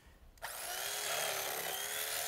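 Electric carving knife switched on about half a second in, its motor running steadily as the blades saw through roasted turkey breast.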